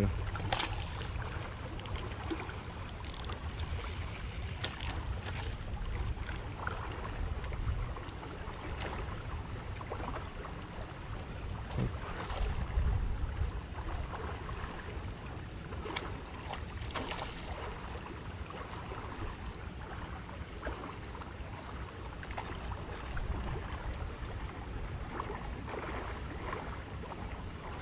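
Outdoor wind rumbling on the microphone, with scattered light clicks and knocks.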